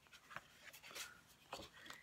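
Faint rustling of printed paper sheets being handled and turned over, with a few soft ticks of paper.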